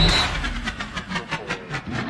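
A break in the heavy-metal soundtrack filled by an edited build-up effect: a run of short pulses that come faster and faster, leading back into the music.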